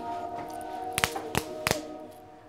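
Background music holding a steady chord, with three quick sharp slaps about a third of a second apart in the second half: hands pumping for a round of rock, paper, scissors.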